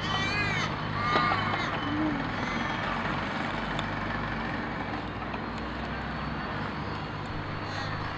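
A crow cawing twice in the first second and a half, over a steady low hum of distant traffic.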